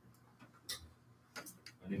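A few faint, sharp clicks and taps of footsteps as a person walks across a hard classroom floor. A man starts speaking near the end.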